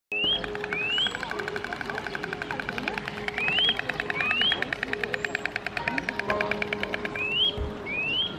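Bird calls, a short rising whistle repeated about once a second, mostly in pairs, over a fast even rattle that stops just before the end and a steady low tone, likely laid on as a nature-sound and music track.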